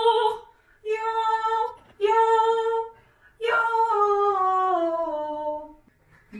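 A woman singing a vocal warm-up exercise: three short notes held on the same fairly high pitch, then a longer note that slides smoothly down. It is a drill for blending chest voice and falsetto across the break between them.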